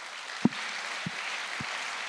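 An audience applauding, a steady clapping noise, with a few dull low thumps about every half second.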